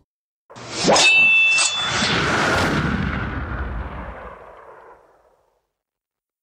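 Metallic clang sound effect: two strikes close together about a second in, ringing with a couple of high tones, then a long fading wash that dies away over about four seconds.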